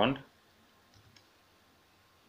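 The tail of the spoken word "second", then quiet with a few faint computer-keyboard keystrokes about a second in.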